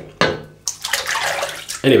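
Water running from a bathroom tap, splashing, which stops near the end.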